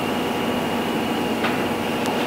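Steady room tone of a meeting room: a constant hiss and hum with a thin steady high whine, and a faint click about one and a half seconds in.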